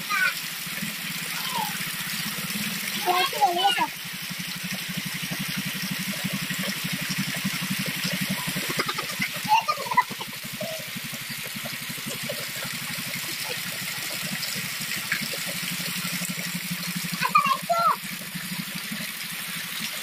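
Heavy rain falling steadily and splashing on a wet, puddled concrete yard, with a steady low hum underneath.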